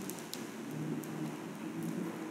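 Quiet classroom room tone with a faint low murmur and a few light clicks near the start.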